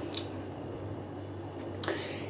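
A quiet pause: a steady low room hum with two brief soft clicks, one just after the start and one near the end.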